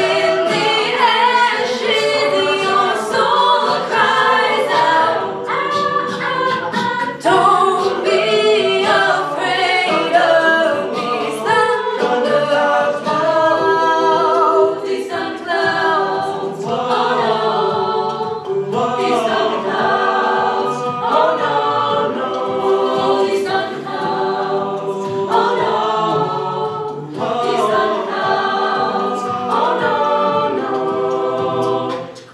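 Mixed-voice a cappella group singing a pop arrangement in harmony with amplified voices, over a steady beat of sharp vocal-percussion hits.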